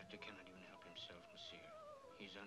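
Faint film soundtrack: a long held musical note that wavers slowly in pitch, with quiet dialogue under it.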